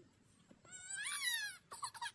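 A baby's short, high-pitched cry, rising and then falling over about a second, followed by a brief whimper.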